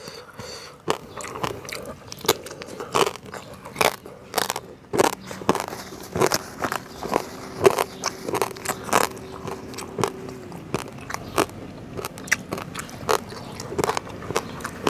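A person chewing a mouthful of food close to a clip-on microphone: irregular wet crunches and clicks, several a second, throughout.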